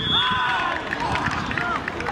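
Footballers shouting and calling to each other on an outdoor pitch, raised voices rising and falling in pitch, with a brief high whistle tone right at the start.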